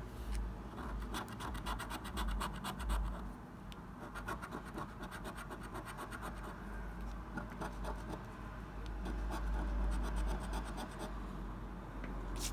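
A coin scratching the coating off a paper scratch card with quick, rapid strokes, in several short runs separated by brief pauses.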